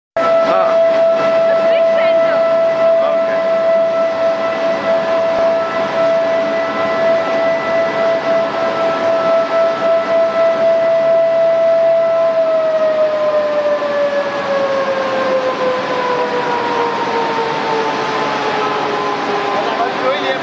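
A steady high whine from a motor-driven spinning machine is held for about twelve seconds. It then slowly falls in pitch as it winds down, over the continuous noise of plant machinery.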